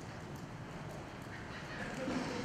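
A pause with the quiet room tone of a large hall and a few faint taps.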